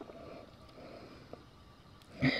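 Faint room tone with light handling of a plastic CD case, and one small click a little past halfway through.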